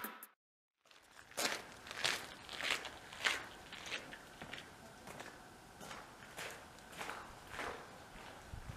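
Footsteps on gravel: one person walking at a steady pace, a step a little more often than every half second, starting about a second in and growing fainter as the walker moves away.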